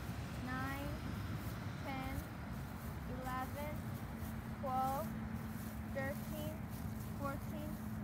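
A woman softly counting her paces aloud, one short high word about every second, over a steady low rumble of road traffic.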